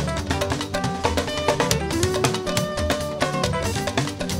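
Live fuji band music in an instrumental stretch: busy, rapid percussion with held melodic notes over it and no voice.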